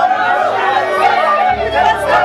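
A group of voices singing and shouting in excited celebration over music with a steady bass line.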